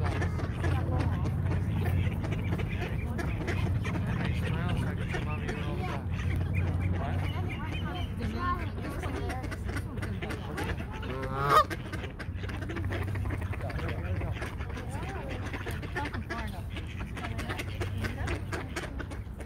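Canada goose honking: one loud, rising honk about two-thirds of the way through, among softer bird calls, over a steady low hum.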